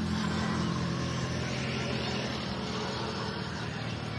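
An engine running steadily in the background, a low even hum that does not change.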